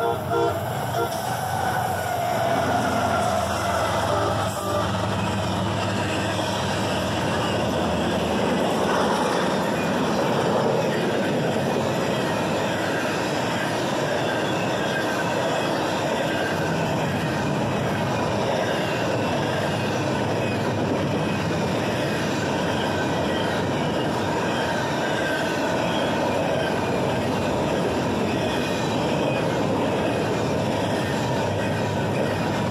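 Diesel-hauled double-stack container train passing close by, with a couple of short horn blasts that end about a second in. After that comes the steady rumble and clatter of the well cars' wheels rolling over the rails.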